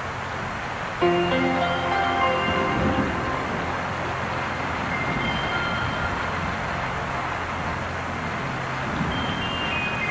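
Soap-opera background music comes in about a second in, with sustained notes, over a steady hiss.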